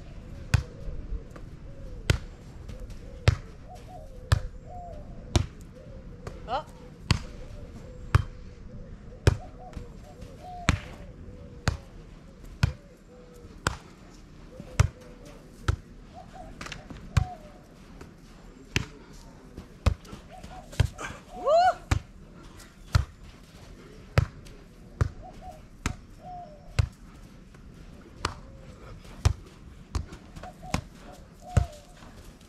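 Volleyball being struck back and forth by hand and forearm in a long rally on a sand court: sharp slaps about once a second.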